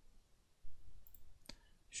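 Computer mouse clicking: a sharp click about one and a half seconds in, with fainter knocks shortly before it.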